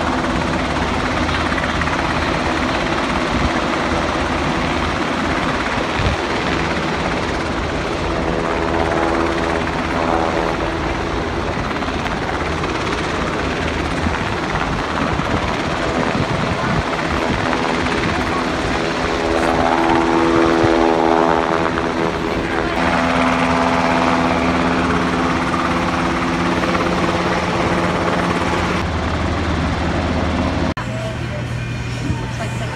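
U.S. Coast Guard MH-60T Jayhawk helicopter hovering, its twin turboshaft engines and rotor giving a steady, loud drone with a constant set of tones. It grows a little louder about two-thirds of the way through.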